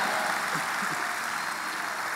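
Congregation applauding, the applause slowly dying away.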